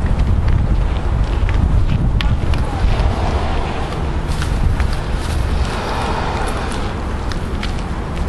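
Heavy low rumble of wind and handling noise on a walking camera's microphone, with scattered light footstep clicks.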